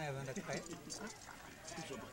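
Men talking in conversation, in a local language rather than the English narration.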